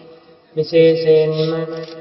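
A man's voice chanting in Buddhist recitation, holding one level pitch for over a second. It comes in about half a second in after a brief dip and tails off near the end.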